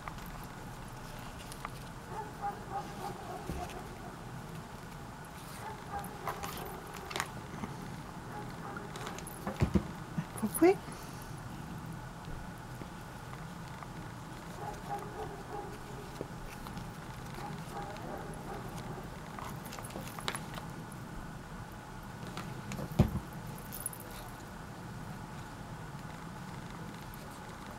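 Quiet handling sounds of satin ribbon being wrapped and gathered around a rubber flip-flop strap, over a steady low background hum, with a few short knocks, loudest about ten seconds in and again near the end.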